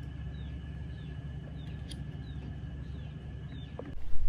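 Outdoor background with a steady low hum and a small bird's faint, short, high, falling chirps repeating about twice a second.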